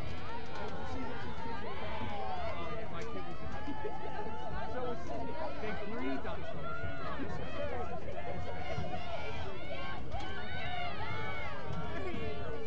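Many overlapping voices calling out and chattering, with no clear words: women's lacrosse players shouting to each other on the field, with spectators' talk mixed in.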